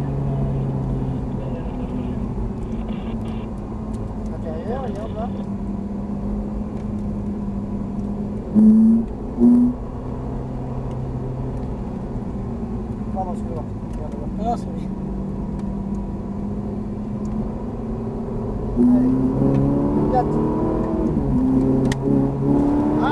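Ferrari 458 Italia's V8 engine heard from inside the cabin, running at steady revs through a bend. There are two short, louder bursts of engine sound about nine seconds in, and the revs climb under acceleration near the end.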